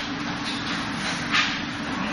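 Steady room noise, an even hiss over a low hum, with one brief sharp slap about one and a half seconds in.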